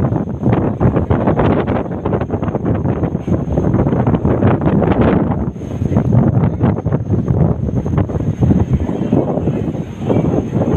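Wind buffeting the phone's microphone aboard a moving boat: a loud, gusty rushing rumble, with a faint steady high whine above it.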